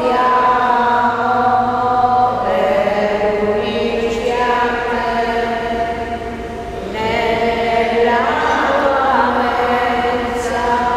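Sung liturgical chant in a slow melody of long held notes, with a short break between phrases about two-thirds of the way through.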